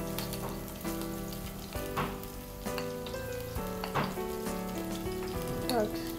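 Ginger and spice powders sizzling as they fry in hot oil in a cooking pot, with a few sharp clinks of a metal spoon about two seconds in and again near four seconds.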